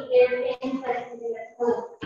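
A voice singing in steady, held notes, broken by short pauses.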